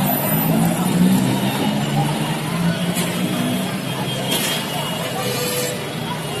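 Busy street traffic: a bus, motorbikes and cars passing, with engine hum and a steady wash of road noise, and people's voices mixed in.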